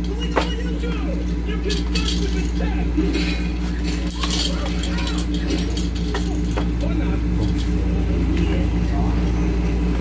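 Light clicks and knocks of plastic baby-rocker parts being handled and fitted, over a steady low hum in the room.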